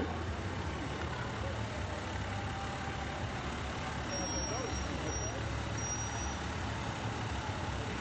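Fire engine's diesel engine running steadily at low speed as the truck rolls past, a continuous low rumble. A faint high-pitched whine comes and goes a few times about halfway through.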